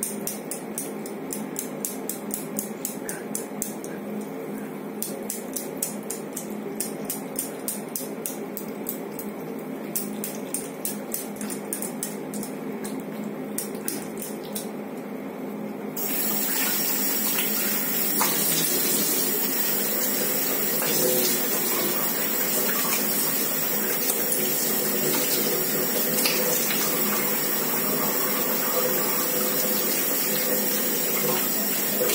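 Tap water running into a basin while a clay face pack is rinsed off, with regular small splashes as water is scooped onto the face. About halfway through the running water turns suddenly louder and fuller.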